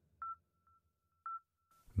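A faint, steady electronic tone with two brief louder beeps about a second apart.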